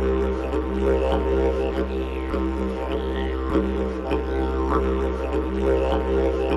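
Music with a steady droning bass and held tones.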